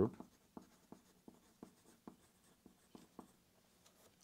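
Pencil writing on a sheet of paper: faint, short scratching strokes, two or three a second.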